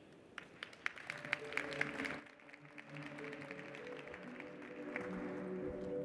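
Audience applause that thins out over the first two to three seconds, with calm walk-on music coming in under it about a second in and carrying on steadily.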